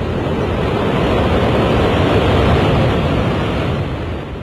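Loud, continuous low rumbling roar of a high-rise building collapsing, heard from a distance, starting to fade near the end.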